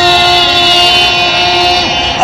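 A voice holding one long, steady vocal note: the noise the crowd has just been asked to make. It wavers, dips and stops just before the end.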